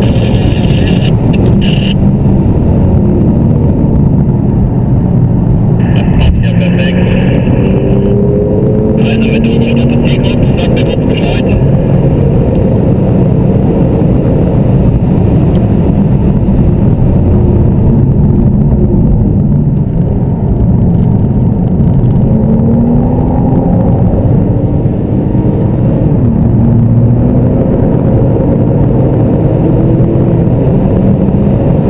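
Porsche 911 Turbo (997) twin-turbo flat-six heard from inside the cabin over steady road and tyre noise, its pitch climbing several times as the car accelerates through the gears.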